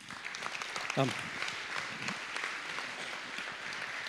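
Audience applause: many people clapping steadily throughout.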